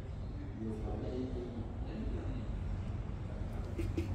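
Faint talking in the background over a steady low hum of workshop noise.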